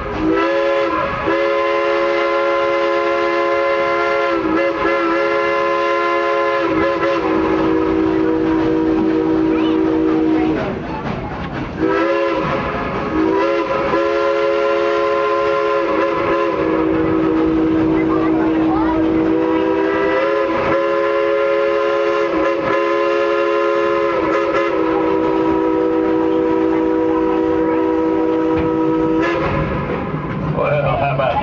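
Steam locomotive whistle played as a song: long held chords of several notes that shift in pitch every few seconds, with a short break about ten seconds in, heard from an open-sided passenger car.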